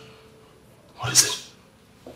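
A man's short, breathy vocal exclamation about a second in.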